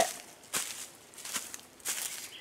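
A few footsteps in dry leaf litter, each a short rustling crunch, about three steps over two seconds.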